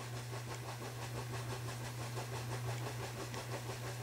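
A quiet, steady low hum with a faint, rapid flutter above it.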